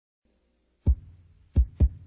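Deep, heavy thumps in a heartbeat-like rhythm: one about a second in, then a close pair near the end, over a faint low hum that starts just before them.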